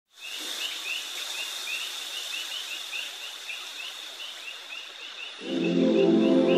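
Outdoor ambience recording with a faint steady high hum and short chirps repeating about four times a second. About five and a half seconds in, soft sustained synth chords of the track come in over it.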